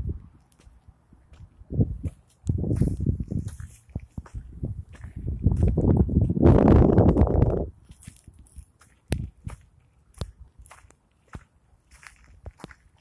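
Footsteps crunching on dry dirt and burned debris, a scatter of sharp crunches and snaps. Two long stretches of low rumbling noise come through, about two and a half seconds in and again from about five to seven and a half seconds, the second the loudest.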